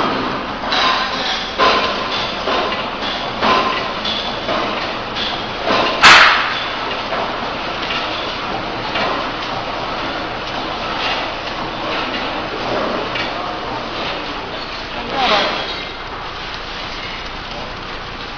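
Horizontal flow-wrap packaging machine running, its cycling mechanism giving a series of short clacks under a second apart, with one much louder bang about six seconds in.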